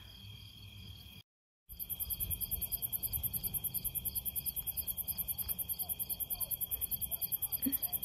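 Night-time crickets chirping: a rapid, even, high-pitched pulsing of about ten pulses a second over a steady high trill. It drops out for a moment about a second in and comes back louder.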